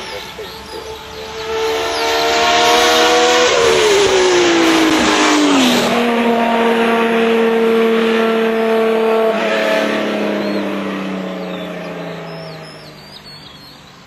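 Hillclimb racing car engine at high revs, swelling in over the first few seconds; its pitch drops steeply for about two seconds, holds steady, then falls slowly as the sound fades away near the end.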